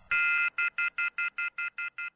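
Telephone off-hook warning tone: a shrill multi-tone beep held briefly, then pulsing rapidly about five times a second and slowly growing fainter.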